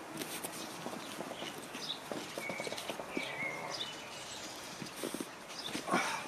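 Knees, hands and bodies shuffling and knocking on foam mats, with cotton gi rustling, as two people grapple on their knees, and a louder thump near the end as one is taken down onto the mat. Birds chirp faintly in the background.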